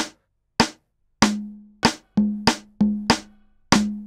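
GarageBand's metronome, set to a rim-shot sound, clicking a count-in at a steady beat about every 0.6 s. From about a second in, sampled conga hits played on the app's percussion pads join the clicks, each with a short low ringing tone.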